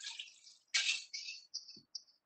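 Coconut milk being poured from a can into a pot of potatoes, heard as a short splashy pour followed by a few brief drips and plops.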